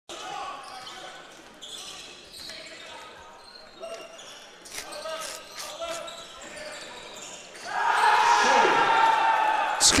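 Basketball game in an indoor arena: a ball bouncing on the hardwood court under background voices, with a few short knocks about five seconds in. About eight seconds in, a sudden, much louder swell of voices rises as the basket is scored.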